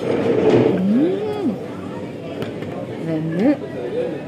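People's voices talking in the background, with two drawn-out vocal sounds that rise in pitch, one about a second in and one near the end.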